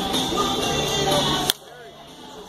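Music with voices, and about one and a half seconds in a single sharp crack of a wooden bat hitting a baseball.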